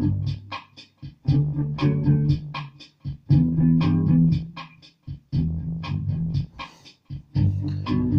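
Ibanez SZ320 electric guitar with Seymour Duncan Pearly Gates pickups, played through a distorted Roland Micro Cube amp: repeated strummed low chords in short phrases of about a second and a half, each cut off abruptly before the next.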